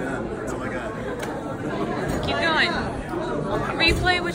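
Indistinct chatter of several people talking. A higher voice stands out about two seconds in and again near the end.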